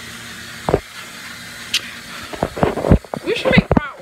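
Knocks and rubbing from a handheld phone being moved about, a single bump about a second in and a flurry of knocks in the second half, with brief fragments of voices.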